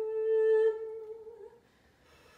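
Mezzo-soprano holding one long sung note at the end of a rising phrase, loudest for the first half-second or so, then fading away by about a second and a half in, leaving a short hush.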